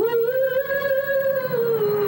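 Commercial soundtrack music opening with a single voice holding one long note. The voice scoops up into the note at the start, holds it, and dips slightly in pitch near the end.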